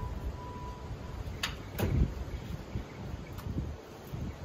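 Two sharp knocks on wood, the second and louder one with a dull thump, from a cordless saw and a wobbly stepladder being handled against a barn door frame. The saw is not running.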